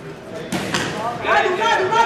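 Two sharp smacks in quick succession about halfway through, from the boxing exchange in the ring, then a loud, drawn-out shout from ringside in a large echoing hall.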